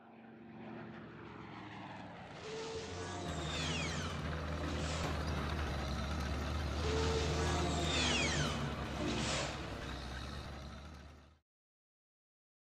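Sound effects for an animated channel intro: a deep steady rumble that swells in after about two seconds, with two falling whooshes near four and seven seconds, cutting off abruptly about a second before the end.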